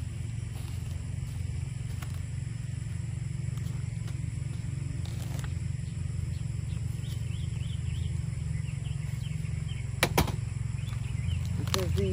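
Garden loppers closing twice in quick succession about ten seconds in as a cabbage stem is cut, over a steady low engine hum in the background.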